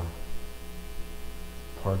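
Steady electrical mains hum with many overtones, continuous under a pause in speech; a man's voice begins again near the end.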